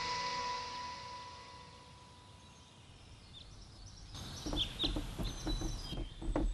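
Soundtrack music fading out over the first two seconds into near silence, then faint room ambience with a few short bird chirps near the end.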